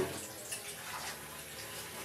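Water running steadily from a kitchen tap.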